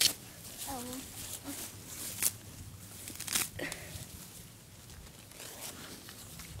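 Grass being pulled up and torn by hand, a few short sharp rips with handling noise around them.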